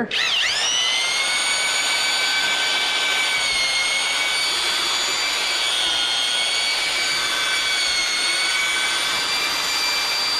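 Half-inch corded drill with a paddle mixer stirring thick drywall joint compound in a pail: the motor spins up at the start, then runs with a steady whine that wavers slightly in pitch as the paddle works the mud.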